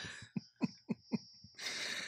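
A man laughing into a headset microphone: four short 'ha' pulses about a quarter second apart, then a longer breathy burst near the end.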